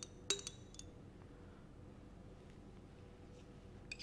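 Glass pipette tip tapped against the inside of a glass conical flask: a few light clinks in the first second, and one more faint clink near the end.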